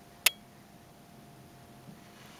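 A single sharp click about a quarter second in, then quiet room tone.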